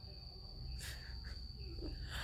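Crickets chirring as one steady high-pitched tone in the background, with a single short sniffle a little under a second in from a woman who is crying.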